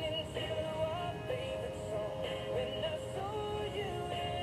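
A pop song with singing playing over a radio.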